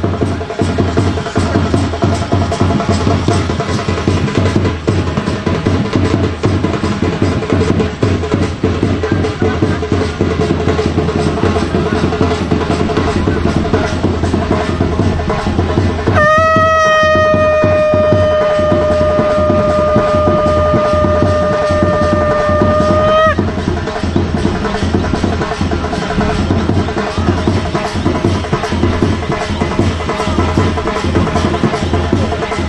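Traditional drums beat fast and without a break. About sixteen seconds in, a conch shell (shankh) is blown in one long, steady note lasting about seven seconds, which lifts slightly and cuts off.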